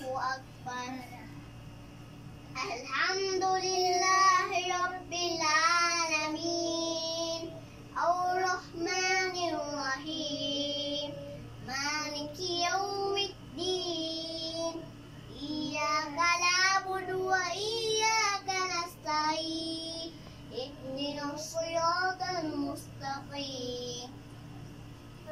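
A young child reciting Quranic verses aloud in a melodic chant while praying, in phrases of a few seconds with short breaks for breath.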